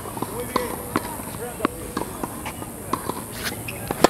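Tennis racket striking the ball on a serve near the end, a single sharp hit, over faint scattered clicks and distant voices on the court.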